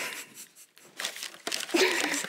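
Crinkling and crackling as a deflated rubber balloon is peeled away from the inside of a set chocolate shell, with a short lull about halfway.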